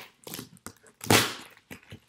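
A large kitchen knife cutting through the packing tape of a cardboard box: a few light scrapes and clicks, then one louder rasp about a second in as the blade draws through.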